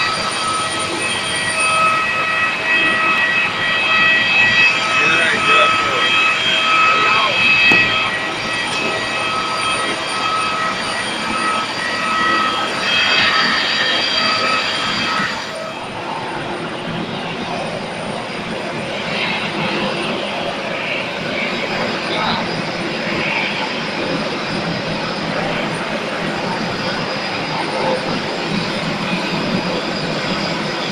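Steady high-pitched turbine whine from a parked jet airliner, in several even tones over a rushing noise, that cuts off abruptly about halfway through. After it, a broad rushing apron noise continues without the whine.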